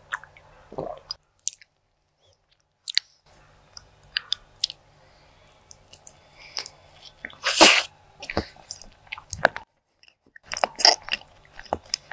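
Close-miked eating sounds of soft, chocolate-spread-covered cake and buns: wet chewing, lip smacks and small mouth clicks. The loudest is a sharper wet burst about seven and a half seconds in. The sound cuts out to dead silence twice, after about a second and again near ten seconds.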